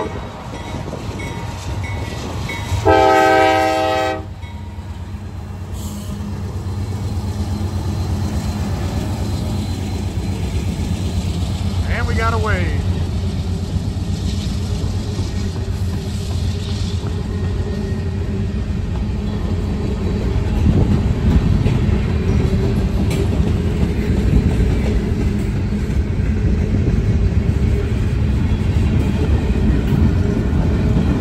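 Freight train's diesel locomotive horn sounding a brief note and then a longer blast about three seconds in, as a horn salute. After that comes the steady rumble of the locomotives and then the freight cars rolling past on the rails, growing louder over the first twenty seconds.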